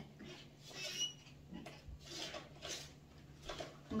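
Faint rustling and light handling noises from food and utensils at a dining table, with a brief high squeak about a second in.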